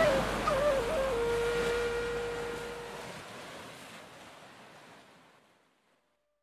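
A flute melody wavers and settles on a long held note about a second in, over a steady wash of wave sound; both fade out to silence about five seconds in.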